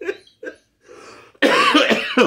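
A man's laughter trailing off in a few short breaths, then a loud cough about one and a half seconds in.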